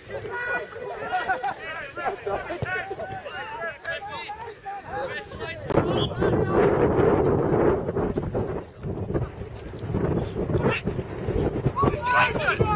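Distant shouting voices of footballers calling to each other across the pitch. In the middle, wind buffets the microphone with a loud rumble for about two seconds before the calls return.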